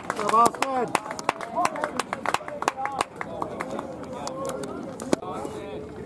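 Background voices of players and spectators at a baseball field, calling out loudest in the first second and fading to a murmur, with scattered sharp clicks throughout.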